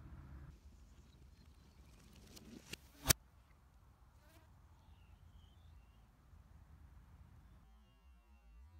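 A single sharp snap of a Hoyt Pro Defiant compound bow being shot at an impala, just after two faint ticks, over a faint insect buzz.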